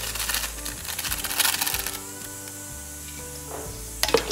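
Rapid crinkling and rustling of a small plastic packet squeezed by hand over a steel mixer jar, busiest in the first two seconds and then easing, over steady background music.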